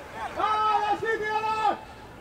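A man's voice calling out in long, drawn-out syllables on a nearly steady pitch, stopping shortly before the end.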